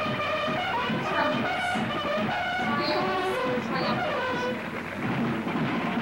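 Several people crying out and wailing in pain at once, their overlapping cries wavering in pitch over a dense low din.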